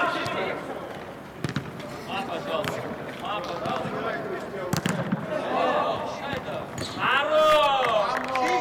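Footballers shouting on an indoor pitch, with sharp thuds of the ball being kicked, one about a second and a half in and another just before the middle. A long, loud shout near the end.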